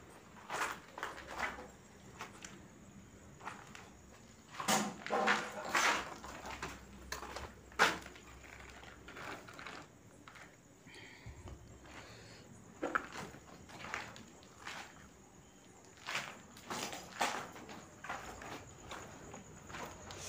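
Footsteps on a floor strewn with broken brick and debris, coming as irregular scattered steps, with a sharper knock about eight seconds in.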